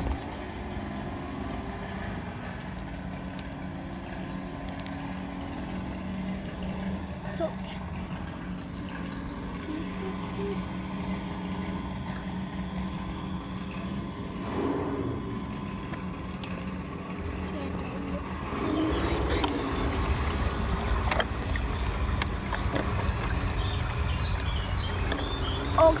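Small electric winch motor on a radio-controlled toy tow truck running steadily as it hauls a toy Jeep out of a river on its cable. It gets somewhat louder about two-thirds of the way through.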